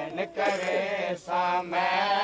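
Male voices chanting a noha, a Shia lament, in Saraiki-Punjabi. The sung phrases are long and wavering, with a short break about a second in.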